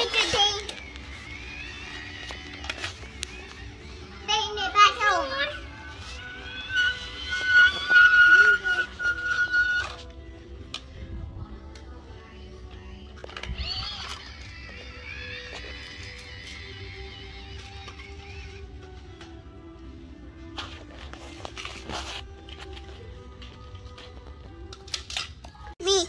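A young child's wordless vocalizing and short stretches of music, with a held high tone for a few seconds, and a few light clicks of plastic toys near the end.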